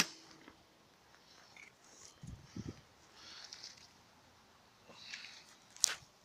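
Faint handling sounds at the moped's fuel filler: soft rustles, a couple of low knocks about two seconds in, and one sharp click near the end.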